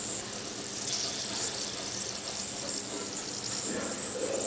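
Raisins frying in hot oil, a steady sizzle as they puff up.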